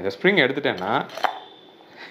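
A man speaking, then a single small metallic click as the parts of a cut-open oil filter (steel can, end plate and spring) are handled.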